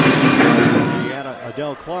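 Loud music mixed with voices that cuts off abruptly about halfway through. A play-by-play ice hockey commentator's voice follows.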